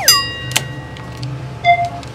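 Rim lock on a steel door being unlatched by hand. A metallic clank sets the sheet-metal door ringing with a clear tone that fades over about a second and a half. A click comes about half a second in, and a short squeak near the end as the door starts to open.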